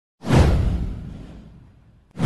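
Whoosh sound effect from an animated intro with a deep low boom. It starts suddenly and fades away over about a second and a half.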